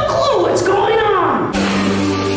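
A theatrical voice with wide, swooping pitch, ending in a long falling glide, then an abrupt cut about one and a half seconds in to loud music with singing.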